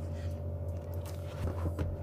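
Faint clicks and rustles of a 32 A commando plug's plastic casing handled in gloved hands, over a steady low hum.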